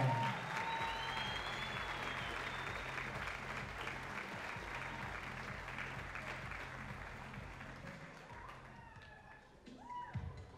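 Crowd applauding, the clapping dying away gradually over the ten seconds, with faint music with a steady low beat underneath.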